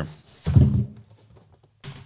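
Brief handling noises of cardboard and moulded pulp packaging: a soft thump about half a second in and a short rustle near the end.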